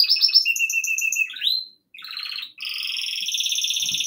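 Pet bird singing: quick high chirps, then a held whistled note that sweeps upward. After a brief pause comes a long, fast trill that fills the second half.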